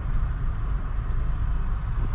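Steady low rumble of a car's cabin noise, heard from the driver's seat with the engine running as the car backs up slowly.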